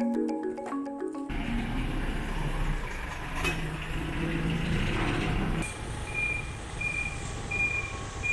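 Marimba-like music that cuts off about a second in, giving way to a recycling truck's engine running on the street. From about six seconds its reversing alarm beeps steadily, about one high beep every 0.7 seconds.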